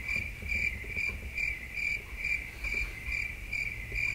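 Cricket chirping: one steady, evenly repeated chirp about twice a second, used as a sound effect over a sleeping scene.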